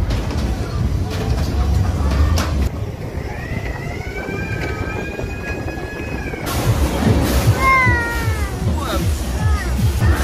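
Fairground din with a heavy music bass, over which a child gives one long high-pitched squeal, rising then held, as he slides down a fairground mat slide. Several shorter falling squeals follow near the end.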